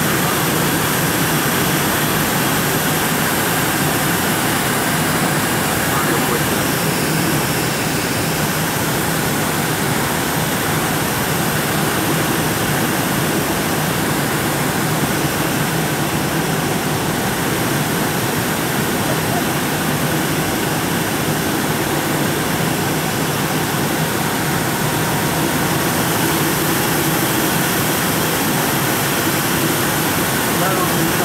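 Steady cabin noise of a jet airliner on approach: the even rush of engines and airflow heard from a window seat, unchanging in level.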